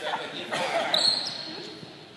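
A basketball bouncing on a gym floor during play, with a high squeal about halfway through.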